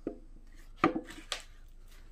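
Metal-on-metal knocks from tools and parts handled on a Honda F23A1 engine block during teardown: three sharp hits, the loudest about a second in with a short metallic ring.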